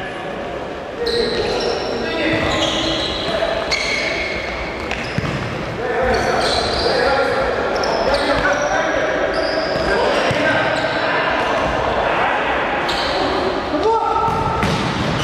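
Futsal play in a large indoor hall: the ball thudding off feet and the wooden court amid players' calls, all echoing. It gets louder about a second in and again around six seconds.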